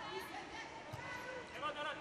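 Faint, quiet ambience of a volleyball arena, with distant voices near the end and a single soft thump about a second in.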